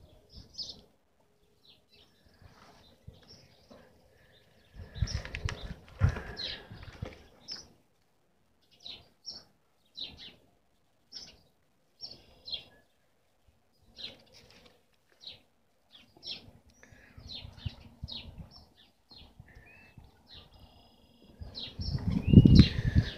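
Small birds chirping: many short, high chirps scattered irregularly through the whole stretch. About five to seven seconds in there is a louder stretch of low rustling and knocking.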